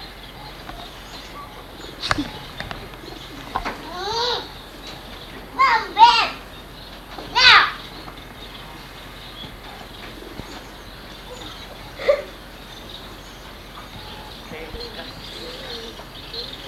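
A few short, indistinct voice sounds: brief calls or exclamations about four, six and seven and a half seconds in, and once more near twelve seconds, over a steady tape hiss.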